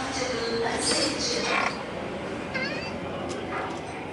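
Indistinct voices in the first second and a half, then a short, high squeak that bends in pitch about two and a half seconds in.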